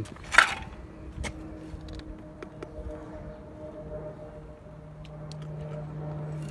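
A sharp knock, then a lighter click, from handling a Milwaukee FUEL cordless circular saw while its bevel angle is checked; the saw's motor is not running. Faint background music with long held notes plays underneath.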